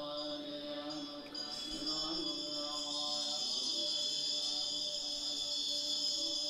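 Devotional mantra chanting with music: long, steadily held sung tones that shift pitch only now and then.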